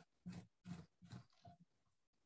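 Surform rasp scraping clay off the wall of a thrown pitcher form in about four or five short, faint strokes, shaving the profile to tighten its curve and take out weight.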